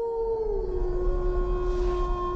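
Horror video-label logo sting: a sustained, siren-like drone that slides down a little in pitch about half a second in, over a deep rumble.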